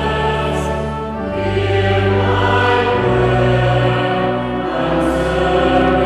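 A church choir singing slow, sustained notes over held low notes: the sung responsorial psalm between the readings of the Mass.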